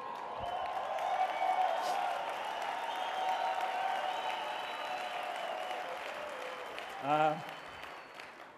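Audience applauding in a large hall, building over the first second or two and slowly dying away, with a brief spoken word about seven seconds in.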